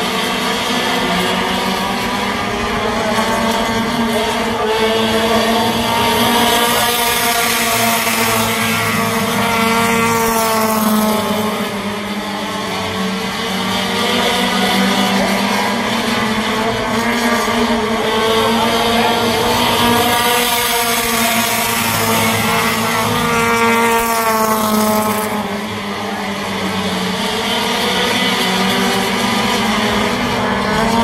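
The engines of a small field of front-wheel-drive race cars running together around a short oval at even, moderate revs, with no hard acceleration. The sound swells and fades as the pack comes past and goes away, dipping twice, about twelve seconds apart.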